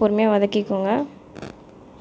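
A woman speaks for about a second, then a single short scrape of a silicone spatula stirring sliced onions in oil in a nonstick pan, about one and a half seconds in.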